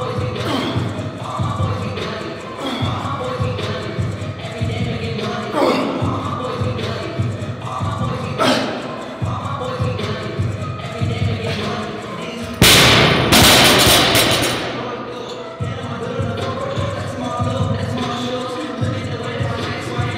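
Background music with a steady beat; about 13 seconds in, a loaded barbell with rubber bumper plates is dropped onto the gym floor, a loud crash and bounce that dies away over about two seconds.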